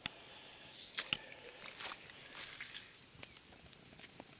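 Faint scuffs and soft clicks of a hand handling a stone fragment over dry, crumbly dirt, with two brief high chirps.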